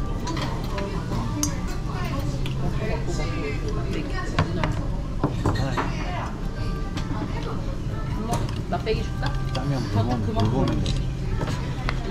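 Metal chopsticks clinking against a brass bowl a few times as noodles are mixed and lifted, over background music and voices.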